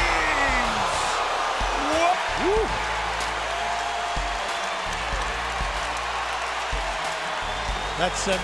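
Basketball arena crowd cheering, a steady wash of noise with a few short shouts rising and falling in pitch.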